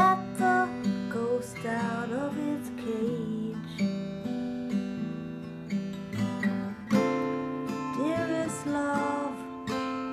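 Strummed acoustic guitar with a singing voice over it in the first few seconds and again near the end.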